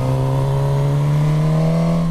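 Suzuki GSX-S1000's inline-four engine pulling under throttle, its note rising slowly and steadily as the revs climb.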